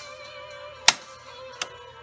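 Two clicks from a Stevens 311C double-barrel shotgun's action being worked by hand while testing the trigger and safety: a sharp, loud click just before a second in and a softer one about half a second later, over steady background music.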